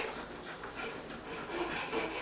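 A child's faint breathy vocal sounds, with a few light knocks from a toy tea set being handled.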